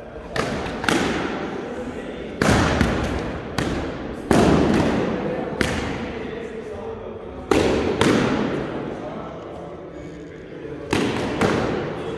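Sparring swords striking a shield and padded armour in a series of sharp hits at irregular intervals, about ten of them, each ringing out in a long echo in the large hall.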